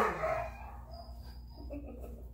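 A Rhodesian Ridgeback puppy, about three weeks old, squealing: one loud, shrill cry right at the start, then fainter whines.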